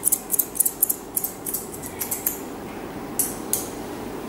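Grooming scissors snipping the facial hair of a West Highland terrier: a quick run of short, crisp snips for about two seconds, then a pause and two more snips.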